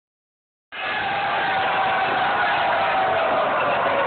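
A large crowd cheering and shouting, starting suddenly a little under a second in and holding steady.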